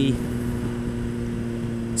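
Suzuki GSX-R motorcycle engine running at steady cruising revs, its note holding one pitch, with wind rushing over the microphone. A brief hiss comes at the very end.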